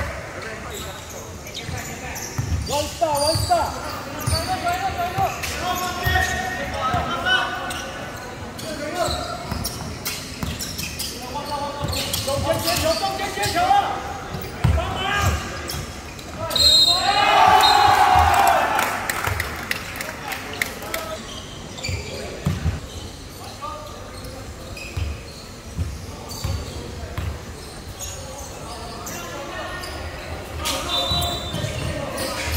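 A basketball bouncing on a hardwood court in a large, echoing sports hall: a run of short low thuds through most of the stretch, with players' and spectators' voices at intervals. About two-thirds of the way through comes the loudest moment, a brief steady high tone followed by a burst of loud shouting.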